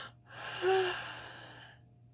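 A woman's long breathy gasp of amazement, with a brief voiced note, loudest a little under a second in and then fading away.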